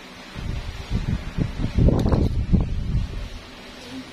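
Irregular rustling and soft low bumps close to the microphone, like handling noise, with one sharp click about two seconds in.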